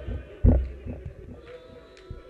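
A loud, deep thump about half a second in, followed by a few fainter knocks, over a faint sustained hum.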